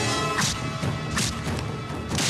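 Two film fight punch sound effects, sharp hits about three-quarters of a second apart, over the background score.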